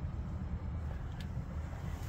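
Low steady outdoor rumble, with a faint click about a second in.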